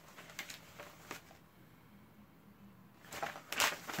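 Paper rustling: a few soft clicks and crinkles, then a louder rustle about three seconds in.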